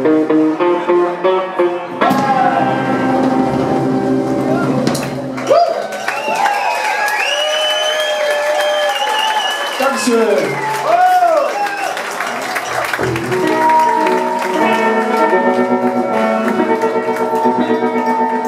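Live band playing a song with guitars, loud in a large room. From about five to eleven seconds in, a voice sings over the music.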